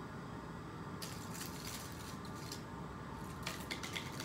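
Faint scattered clicks and light taps of handling over a steady low hum of room noise, with the clicks coming closer together near the end.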